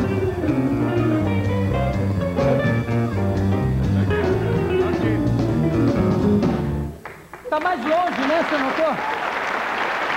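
A live band plays a bluesy jazz tune with a walking bass line and saxophone, and it stops abruptly about seven seconds in. Studio audience applause follows, with a few voices over it.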